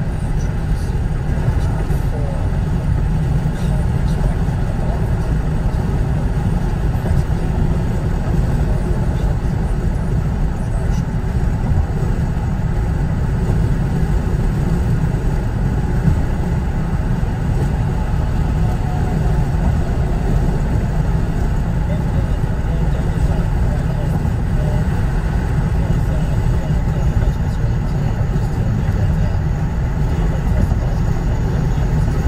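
Steady low road and engine rumble of a car at highway speed, heard from inside the cabin.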